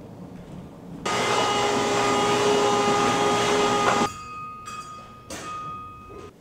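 A loud steady rushing noise with a whine in it starts suddenly about a second in and cuts off sharply three seconds later. A fainter whine lingers, with a short burst of noise near the end.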